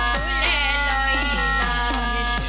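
Sylheti dhamail folk song played through a PA: a woman's high, wavering sung line over sustained accompaniment notes, with drum strokes that drop in pitch about twice a second.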